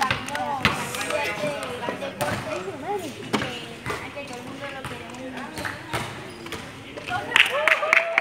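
Children's voices chattering over each other, with a few sharp knocks scattered through. Near the end a group starts clapping in an even rhythm.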